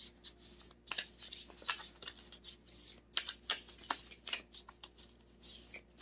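Tarot deck being shuffled by hand: a quiet, irregular run of soft card slaps and rustles, with a brief pause about five seconds in.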